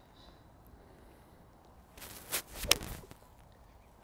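Golf four-iron swung through thick rough: a swish of the club lasting under a second, ending in one sharp strike of the ball and grass about two-thirds of the way through.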